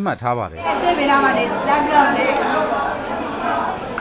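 Many people talking at once in a crowded classroom: a steady, dense babble of overlapping voices that starts about half a second in.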